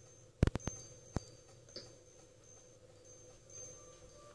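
A few sharp clicks and knocks in the first second or so, handling and footstep noise close to the phone's microphone, over a low steady hum.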